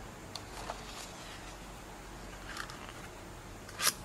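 Paper pages of a ring-bound brochure being turned by hand: a few faint rustles, then a short, louder rustle near the end as a page flips over.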